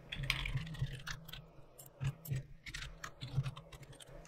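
Typing on a computer keyboard: a quick, uneven run of keystrokes over a low steady hum.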